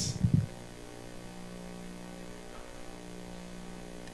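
Steady electrical mains hum in the microphone and sound system. A few short low thumps come right at the start.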